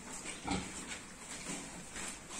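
Pigs grunting low: a short grunt about half a second in and a fainter one about a second later.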